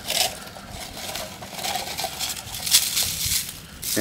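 Dry, spent birch bark, charred to a crumbly residue, crunching and crackling as it is broken up and shaken out of a small metal tin, with a sharper crunch near three seconds in. The bark is burnt through to a dust, the sign that all its oil has been distilled out.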